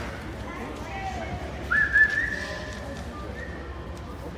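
A single high whistled note that rises quickly, then holds nearly steady for about two seconds, over faint crowd chatter.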